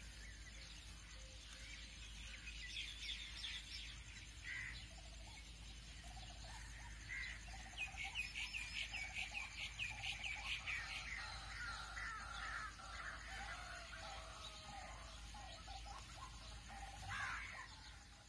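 Birds calling and chirping, faint, with a quick run of repeated high chirps in the middle, over a low steady hum.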